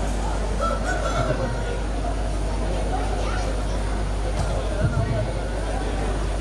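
Onlookers' background chatter at an outdoor gathering, faint scattered voices over a steady low hum.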